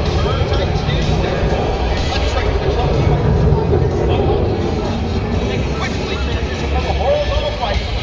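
Outdoor crowd ambience: indistinct voices and some music over a steady low rumble.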